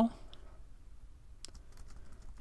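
A few faint computer keyboard key clicks about one and a half seconds in, over quiet room tone, as the brush tool is selected.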